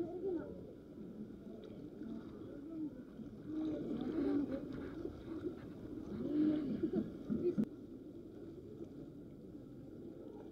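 Faint, indistinct voices coming and going in a few short stretches over a steady low background noise, with one sharp click about three-quarters of the way through.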